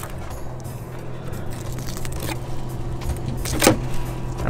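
A steady low engine hum, with one sharp click near the end.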